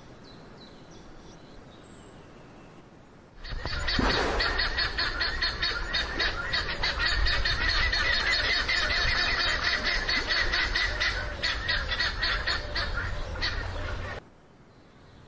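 A dense chorus of many birds chirping and squawking, starting abruptly about three and a half seconds in after a quiet stretch and then running on loud and busy.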